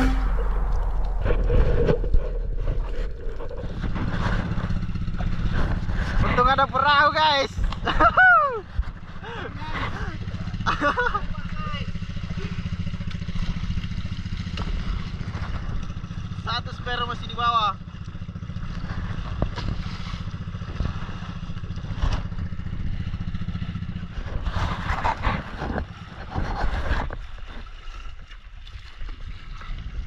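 Small outrigger boat's engine running steadily, with water splashing at the microphone and voices calling out several times.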